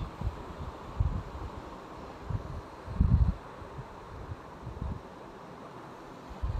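Cooked pongal being stirred and turned with a spoon in a steel bowl: soft rustling with a few low dull bumps, the loudest about three seconds in, over a steady hiss.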